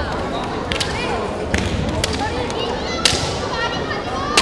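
Bamboo shinai striking kendo armour in a gymnasium: sharp cracks about a second apart, the loudest about three seconds in. Each is followed by high-pitched kiai shouts, over the steady hubbub of the hall.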